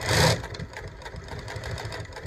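New-Tech GC-8810 direct-drive post-bed lockstitch industrial sewing machine stitching steadily, a rapid even ticking of the needle and hook. It opens with a brief loud rush of noise.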